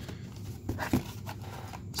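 Quiet handling sounds of a paper envelope and wax card packs being moved about on a table, with a light tap at the start and a few faint scattered rustles.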